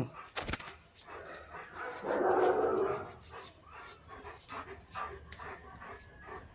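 A dog makes a rough vocal sound lasting about a second, about two seconds in, with fainter dog sounds around it.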